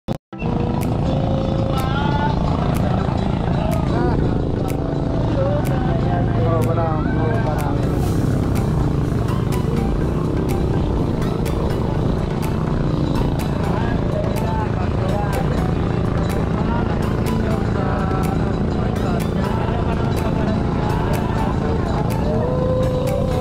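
Boat engine running steadily, with a song with vocals playing over it.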